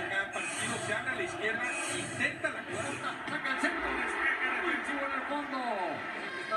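Men's voices from a television football broadcast, heard through the TV's speaker, with a brief downward-sliding tone near the end.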